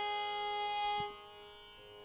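Carnatic violin holding a long, steady note over a sruti-box drone, stopping about a second in; the quieter drone carries on alone.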